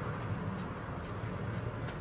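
Marker pen writing on paper, faint short scratchy strokes over a steady low hum.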